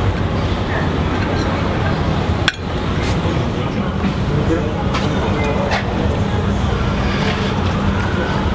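Busy street ambience: steady traffic noise and indistinct background voices, with light clinks of a fork on a plate and a sharp click about two and a half seconds in.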